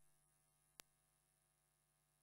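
Near silence: a faint steady electrical hum, with one brief click a little under a second in.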